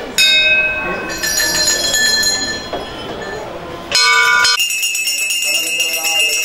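Temple bells ringing. A bell is struck just after the start and again about a second in, each stroke ringing on in long steady tones. A louder stroke comes at about four seconds, followed by fast, continuous bright ringing of the kind a puja hand bell makes.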